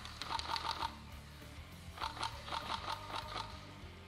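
Airsoft gun firing two rapid bursts of shots, a short one and then a longer one, over background music.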